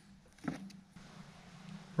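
Quiet room tone with a faint steady low hum, broken by one brief click about half a second in.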